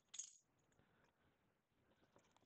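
A single brief light clatter, a plastic box cutter set down on a hard table, followed by faint handling of a shrink-wrapped box.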